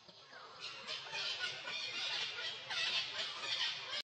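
Macaques squealing and screeching: a run of harsh, high-pitched calls that starts about half a second in and grows louder.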